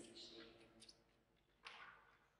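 Near silence, with a faint voice trailing off at the start, a few soft clicks, and one brief rustle a little past halfway, from the altar book and vestments being handled.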